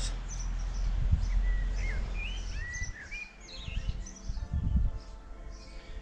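Songbirds singing short, sweeping chirps in the first half, over a low outdoor rumble with a few dull thumps.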